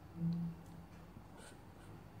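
Felt-tip marker writing on paper: a few faint, short strokes. Near the start, a brief low hum from a voice is the loudest sound.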